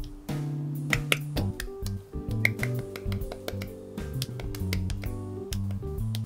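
Background music with irregular sharp plastic clicks and snaps from a plastic model kit being assembled.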